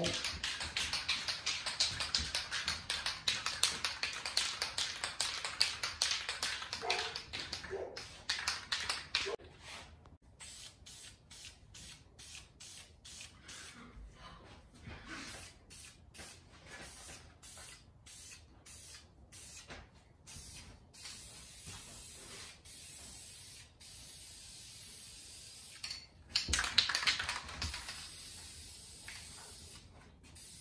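Aerosol spray can of primer hissing as it is sprayed, in long passes. The longest pass runs through the first eight seconds, shorter and quieter passes follow, and there is another strong pass near the end.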